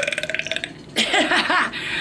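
A woman's long, loud belch that breaks into rapid rattling pulses before it ends, followed about a second in by a short burst of her laughter.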